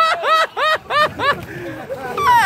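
A person laughing hard: a quick run of short ha-ha bursts, about five a second, that fades out about halfway through.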